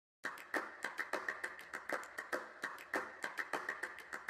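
A quick, uneven run of sharp clicks or taps, about five a second, starting a moment in.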